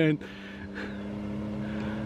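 Dune buggy engine droning steadily as the buggy approaches along the road, growing gradually louder.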